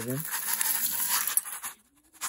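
Dry grain feed rattling and shifting in a bowl as it is carried and tilted, a few kernels spilling over the rim, a scratchy clatter of many small clicks that fades out near the end.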